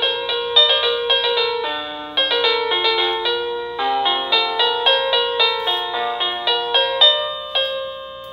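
Hampton Bay electronic doorbell chime playing a quick multi-note melody through its small speaker after one press of the button, the last note fading out near the end. The full tune plays without holding the button down, a sign that the wiring and its diode are working.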